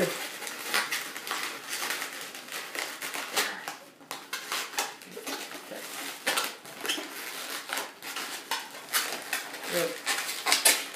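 Inflated latex twisting balloons being handled and worked together by hand: irregular squeaks, rubs and small clicks of latex against latex and fingers as a red balloon is pulled through the sculpture.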